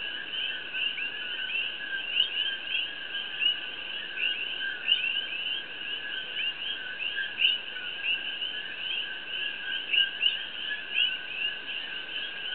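A dense chorus of many small animals calling: a constant overlapping stream of short, high chirps with a steadier trill lower down, continuing unbroken.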